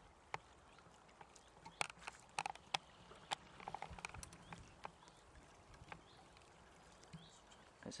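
Faint small splashes and sloshing of shallow river water around a landing net holding a salmon. Scattered sharp ticks and short splashes are bunched in the first half, then it is quieter.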